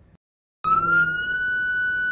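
Police car siren starting about half a second in and sounding one held tone that rises slightly and then stays level.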